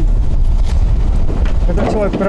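People talking, over a steady low rumble that runs throughout. The voices grow clearer near the end.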